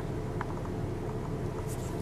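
Steady low rumble inside a car's cabin, with a small click about half a second in.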